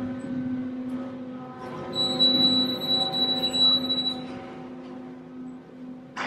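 Elevator car running with a steady low hum, and a high electronic tone sounding for about two seconds in the middle as the car reaches its floor.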